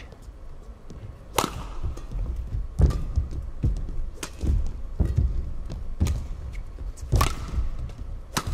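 Badminton rally: a feather shuttlecock struck hard by rackets, a sharp crack about every one to one and a half seconds, with thuds of the players' footwork on the court between the shots.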